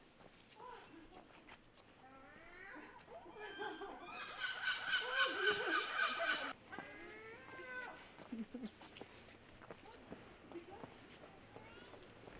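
A long, wavering animal call lasting about four seconds in the middle: it rises, trembles rapidly at a high pitch, then falls away.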